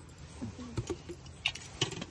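Rain pattering on a fishing umbrella canopy, with a few sharp clicks and taps from line and fish being handled as a small fish is swung in to hand.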